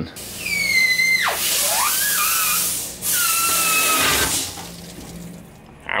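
Compressed air from a blow gun rushing through a car's fuel line to flush out old gas. It comes as two loud hissing blasts of a couple of seconds each, with a high whistling squeal that slides down in pitch.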